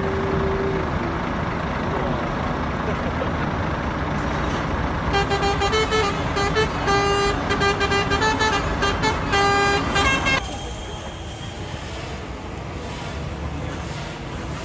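Heavy truck engine rumbling steadily, with a string of short horn honks from about five seconds in. About ten seconds in, the sound cuts to quieter street traffic noise.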